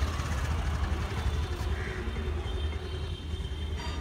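A steady low engine-like rumble in outdoor background noise, with no distinct events.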